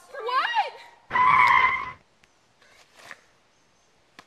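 A wavering, sliding cry, then about a second in a loud tire-screech skid lasting just under a second, as the toy car is made to skid at the pedestrian.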